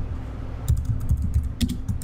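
Computer keyboard typing: a quick run of key clicks that starts a little under a second in.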